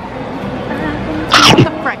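A person sneezes once, loudly, about one and a half seconds in, over low background chatter.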